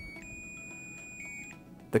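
Click of the test button on a SurgeLogic SurgeLoc surge protective device, then a steady high-pitched alarm tone lasting about a second and a half as the device goes into its alarm state.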